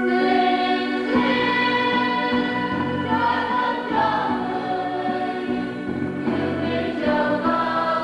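Church choir singing a hymn in sustained, slow-moving chords over a steady held accompaniment note.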